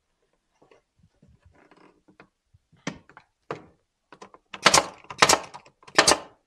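Faint wooden knocks as a cedar picket board is set into place, then a nail gun firing twice into the cedar near the end, the two loud shots about half a second apart.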